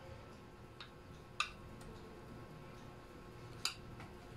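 Two short, sharp clicks about two seconds apart, with a fainter click just before the first, over low room noise.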